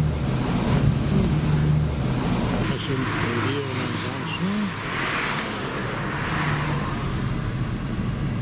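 A moving car heard from inside the cabin in city traffic: a steady engine drone with tyre and road noise. The low engine hum drops away about three seconds in, leaving mostly road hiss.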